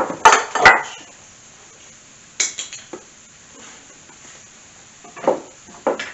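Kitchen clatter of containers and utensils being handled: a quick run of sharp knocks and clinks at the start, a few more about two and a half seconds in, and a couple of softer knocks near the end.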